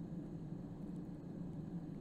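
Workshop room tone: a low steady hum with faint background noise and no distinct event.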